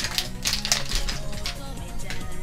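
Metal spoon clicking and scraping against a clear plastic cake tray as it cuts into a roll cake, several light clicks over soft background music.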